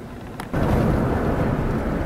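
Steady low rumble of road and engine noise inside a moving vehicle's cab, starting suddenly about half a second in. Before that there is a quiet hum with a single click.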